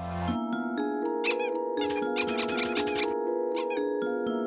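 Cartoon background music: a low drone cuts off just after the start and gives way to light, steady notes. A run of high, wavering cartoon squeaks sounds over it from about a second in until about three seconds in.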